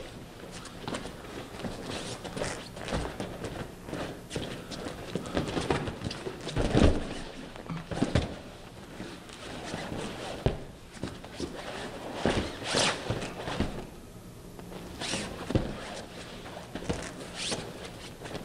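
Two grapplers' bodies, shoes and gloves moving on padded foam mats: irregular scuffs, shuffling steps and dull thuds, with the loudest thud about seven seconds in.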